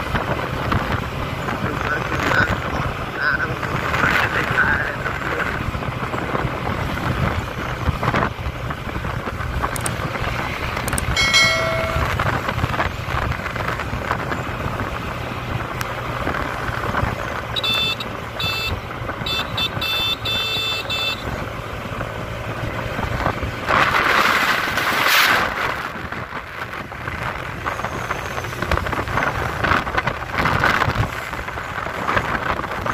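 Motorcycle engine running steadily at road speed, with wind rushing over the microphone. A brief horn-like toot sounds about a third of the way in, short high chirps follow a little past the middle, and a louder rush of wind noise comes near the end.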